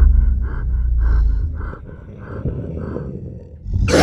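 Film sound design: a deep rumble that fades out, under a rhythmic pulsing about three times a second. Near the end a sudden loud burst of sound cuts in.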